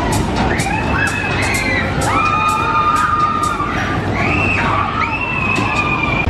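Riders screaming on a spinning Waltzer fairground ride: about four long high screams of about a second each, over loud fairground music with a steady beat.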